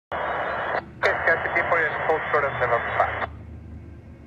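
Air-traffic-control radio from an airband scanner: a short burst of static hiss, then a tinny, narrow-band voice transmission that cuts off sharply about three seconds in. A low steady rumble remains underneath.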